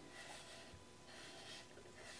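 Near silence, with faint soft rubbing as a damp sponge is wiped along the rim of a leather-hard clay mug.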